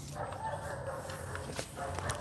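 A dog whining faintly, in one stretch for most of the first second and again briefly near the end.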